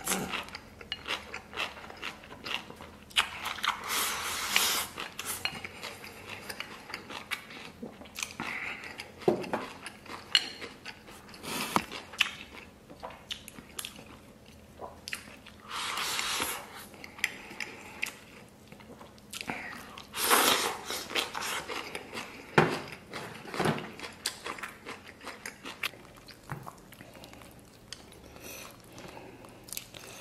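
Close-miked chewing and biting: a man eating mouthfuls of rice with braised beef ribs. Wet mouth sounds run throughout, with a few louder slurping bursts and scattered clicks of chopsticks and a metal spoon against a ceramic bowl.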